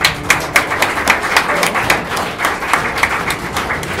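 A small crowd of people clapping, many separate hand claps close together and uneven, greeting a boxer who has just been called up.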